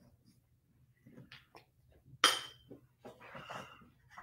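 Quiet handling of a marker pen: a few faint clicks, one sharper noise just over two seconds in, and a soft rustle near the end.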